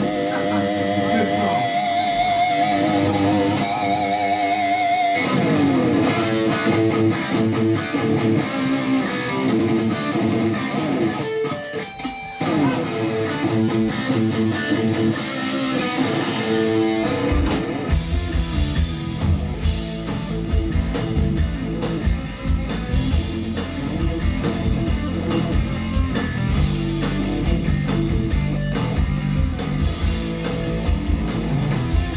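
Live hard rock band playing a song's opening. Electric guitar plays held, wavering notes, then a riff over a steady ticking beat. Bass and drums come in fully about eighteen seconds in.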